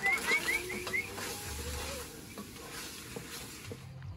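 Onions and bacon sizzling in a pot on a camp stove while being stirred. A quick run of five short, high rising chirps sounds in the first second.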